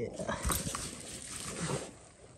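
A Labrador sniffing and digging in loose, dry garden soil: a close, scratchy rustle of dirt lasting most of two seconds.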